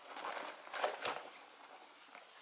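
A wallet being pushed into a small leather Rebecca Minkoff Mini MAC handbag: soft rustling and a few light knocks of leather and hardware, mostly in the first second, then tapering off.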